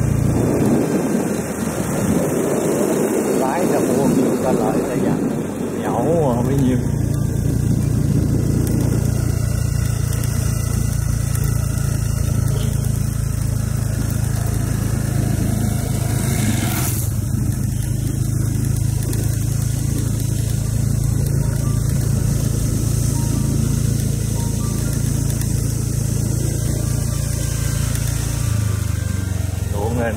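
Motorcycle engine running steadily while riding along a road. About halfway through there is a brief whoosh as another motorbike passes the other way.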